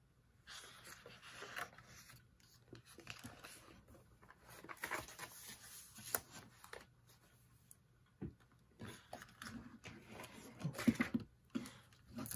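Paper handling: the pages of a spiral-bound planner being flipped and a cash envelope organizer's paper envelopes being shuffled, a string of soft rustles, light taps and scrapes.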